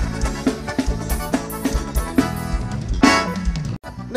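Live forró band playing an instrumental passage: a drum kit keeps a steady beat with kick and snare under bass and held keyboard tones. The sound cuts out suddenly for a moment near the end.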